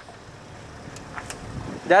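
Off-road 4x4's engine running low and steady as it crawls up a dirt ledge, with two faint clicks about a second in.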